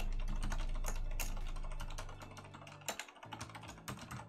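Fast typing on a Kinesis Freestyle Pro split mechanical keyboard: a quick, irregular run of key clicks. A low hum sits underneath and fades out about three seconds in.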